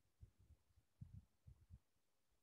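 Near silence, with several faint, short, low thumps scattered through it, the strongest about a second in.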